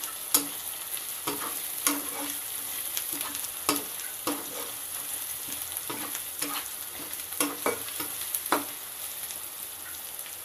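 Chopped capsicum frying in oil in a black pan with a steady sizzle, while a slotted metal spatula stirs it, scraping and tapping against the pan every second or so.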